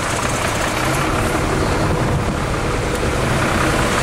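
Volvo truck's diesel engine idling steadily close by.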